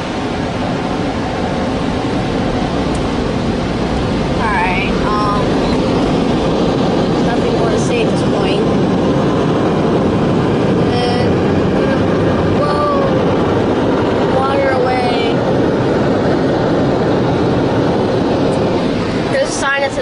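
Automatic car wash blow dryers running, a loud, steady rush of air heard from inside the car.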